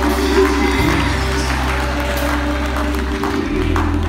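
Live gospel music accompaniment: held keyboard chords over a steady bass, in a gap between the singer's sung lines, the bass moving to a new note near the end.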